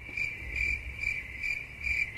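Cricket chirping sound effect, the comedy 'crickets' cue for an awkward silence. A steady high trill cuts in suddenly and pulses about three times a second over a low rumble.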